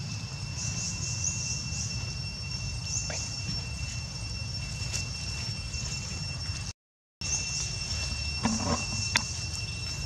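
Outdoor woodland ambience: a steady, high-pitched insect drone over a low rumble, with a few faint chirps and short clicks. The sound cuts out completely for about half a second midway.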